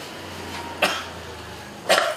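A man coughing twice into a face mask, two short sharp coughs about a second apart.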